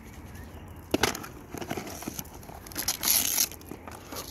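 Close handling noises: a sharp click about a second in, a few light knocks, then a short, louder scraping rustle just after three seconds, with no voice.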